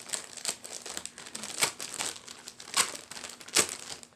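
Packaging crinkling as a newly delivered item is unwrapped by hand, in irregular crackles with a few louder ones near the middle and end.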